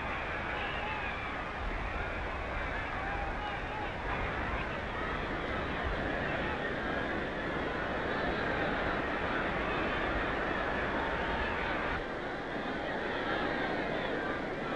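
Large stadium crowd cheering and shouting in a steady, continuous din, on a narrow, dull-sounding old newsreel soundtrack.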